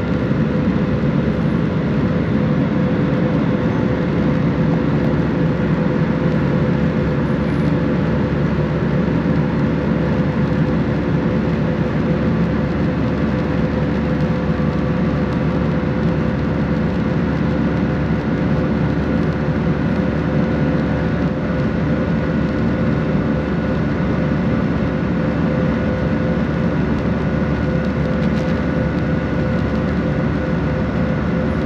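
Airbus A319 cabin noise in climb after takeoff, heard at a window seat beside the wing: a steady rush of engine and airflow noise with a few faint steady tones running through it.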